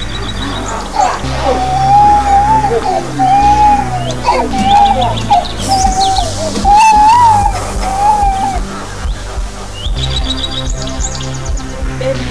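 Background film music: a gliding melody line over steady bass notes, with runs of high bird-like chirps near the start and again near the end.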